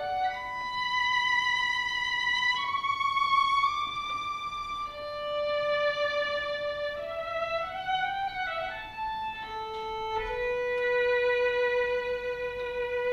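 Solo violin playing a slow melody of long held notes, with a slide between notes about eight seconds in and a long low note held near the end.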